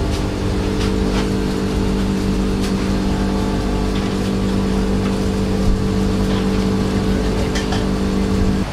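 Steady mechanical hum of a running motor or engine, holding one pitch, with a few faint ticks over it.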